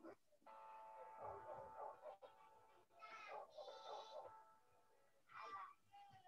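Faint background music with short lines of cartoon-character dialogue from an animated English-conversation video, heard through a video call's screen share.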